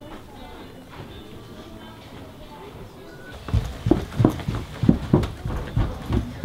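Footsteps going down a carpeted wooden staircase, starting about halfway through: regular thumps about three a second.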